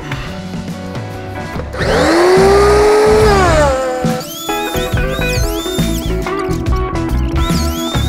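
Background music with plucked-guitar-like notes; about two seconds in, an electric circular saw's motor spins up, runs for under two seconds and winds down.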